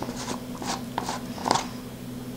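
Round plastic antenna case being twisted and pried open by hand: a few faint clicks and scrapes of plastic on plastic, over a steady low hum.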